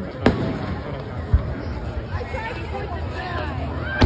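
Fireworks going off: a sharp bang a fraction of a second in and a deep boom about a second later, over crowd chatter.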